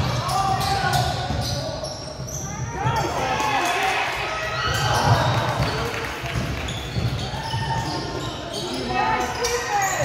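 Live basketball play on a hardwood gym court: the ball bouncing as it is dribbled, running feet and short squeaks, and players and spectators calling out, all echoing in the large hall.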